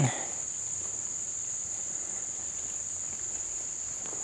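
Steady high-pitched insect chorus, one unbroken trill holding the same pitch throughout.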